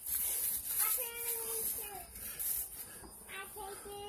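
A young child's faint voice in short high-pitched phrases, about a second in and again around three seconds in.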